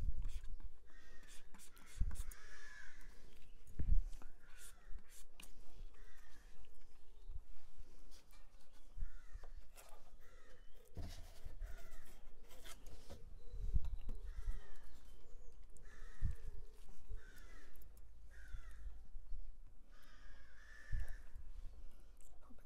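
A bird calling outside, a string of short calls every second or two, over a low steady hum with a few knocks now and then.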